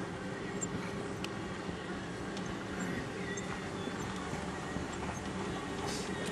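Range Rover Classic's V8 engine running steadily, heard from inside the cabin, with scattered knocks and rattles from the body as it drives over rough ground.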